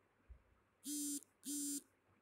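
Smartphone message notification tone: two short, identical electronic beeps about half a second apart, signalling incoming chat messages. A faint low bump comes just before.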